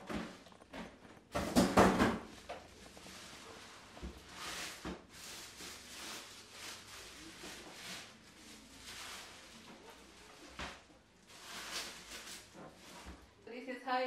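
Polythene wrapping bag rustling and crinkling as a pressure cooker is pulled out of it, with the loudest burst of rustling about two seconds in and softer rustles after.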